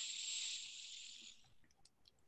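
A soft hiss that starts suddenly and fades out over about a second and a half.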